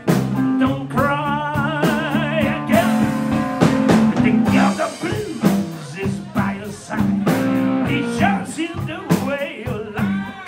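Live blues-rock band playing electric guitar, bass guitar and drum kit, with a lead line of wavering vibrato notes about a second in.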